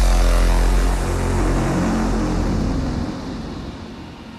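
A long, heavy, distorted electronic bass tone in a frenchcore/hardcore mix, held without any kick drums and fading away over the last second or so.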